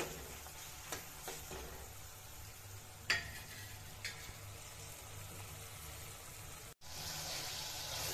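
Ground tomato, garlic, onion and green-chilli masala paste sizzling faintly in oil in an aluminium kadhai on low flame, being cooked down until the oil separates. A few sharp clicks of the metal spatula against the pan, the loudest about three seconds in. After a brief dropout near the end the sizzle returns a little louder.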